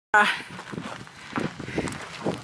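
A short "uh" at the start, then footsteps walking on hard ground, soft thuds about two a second.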